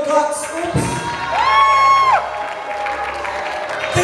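Church congregation responding with clapping and shouts over background music, with one high held cry that rises, holds for about a second and falls away near the middle.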